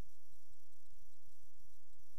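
Steady hiss with two faint high whines over an irregular low crackling rumble: the running background noise of a sewer inspection camera's recording as its push cable is pulled back through the pipe.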